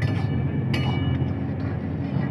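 Long metal ladle striking and scraping a steel wok of chicken karahi, two ringing clanks less than a second apart, over a steady low rumble.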